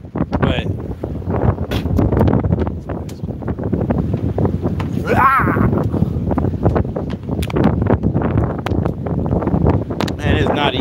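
Wind buffeting the microphone on an open boat in choppy water, with a steady rumble and gusty thumps. A brief voice-like sound rises and falls about halfway through.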